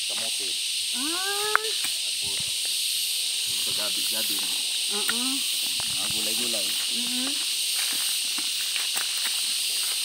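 Steady high-pitched hiss of an insect chorus, with quiet voices talking off and on and a single sharp click about one and a half seconds in.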